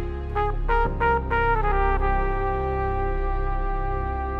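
Flugelhorn played solo: a quick run of short notes, then one long held note, over a backing track with a low bass line.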